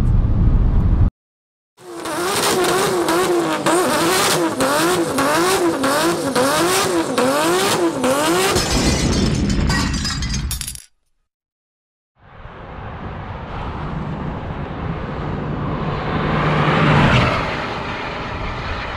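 A car's engine heard inside the cabin runs for about a second and cuts off. Then comes an outro sting of about nine seconds: a warbling electronic tone over crackling effects. After a short silence, a car drives on the road, its engine note rising and growing louder toward the end.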